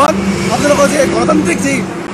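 Several voices chanting a repeated slogan, one word called again and again, over steady outdoor background noise.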